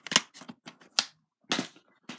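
Plastic DVD cases being handled: a series of sharp clicks and knocks, the three loudest near the start, about a second in and about a second and a half in.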